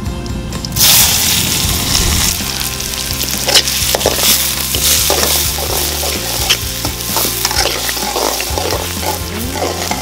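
Chopped onions dropped into hot oil in a hammered steel kadai, setting off a sudden loud sizzle a little under a second in. The onions then fry steadily while a metal spatula stirs them, with scattered scraping clicks against the pan.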